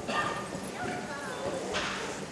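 A person's voice with rustling, and a short burst of noise near the end.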